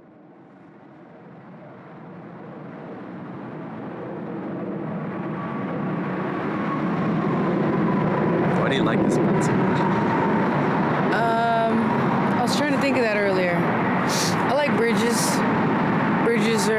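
Road traffic on a steel truss bridge: a steady rush of tyres and engines that swells up over the first several seconds and then holds.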